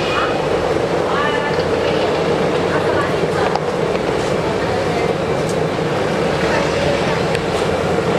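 Doughnuts deep-frying in a stainless-steel fryer, the oil bubbling and sizzling steadily around the dough rings. Voices can be heard faintly in the background.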